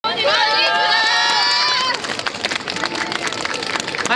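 Voices of yosakoi dancers shouting one long held call together for about two seconds; it cuts off suddenly, leaving quieter crowd noise with light clicks.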